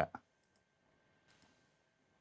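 A single faint computer mouse click about half a second in, over quiet room tone.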